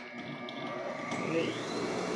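Industrial sewing machine's motor, just switched on, running with a steady hum; about a second in a whine rises in pitch and then holds as the motor comes up to speed.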